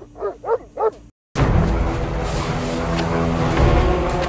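A dog barks several times in quick succession, then the sound cuts off for a moment and loud, dramatic background music takes over from about a second and a half in.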